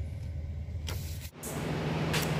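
Steady low hum of an idling semi truck, with a short knock about a second in. About a second and a half in it changes abruptly to a different steady engine hum, slightly higher and with more hiss.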